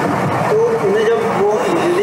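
Speech: a voice talking in a large hall over a steady background noise.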